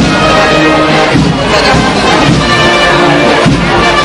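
Brass band playing a processional march, loud and continuous.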